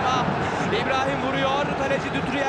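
Football stadium crowd noise: a loud, steady din of many voices with shouts standing out, as a home shot on goal is turned away for a corner.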